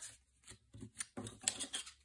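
Paper die-cut hearts and thin metal cutting dies being handled on a tabletop: a few faint, scattered taps and light paper rustles.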